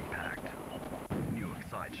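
A sudden deep boom about a second in, an impact sound effect for the logo, followed by a voiceover starting to speak.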